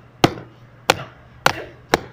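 A thin stick whacked against something hard, four sharp strikes about every half second.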